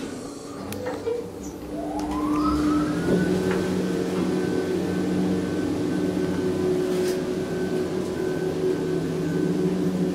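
Schindler Smart 002 machine-room-less traction elevator under way: a whine rises in pitch about two seconds in as the car accelerates, then holds steady over a low hum while the car travels up at speed.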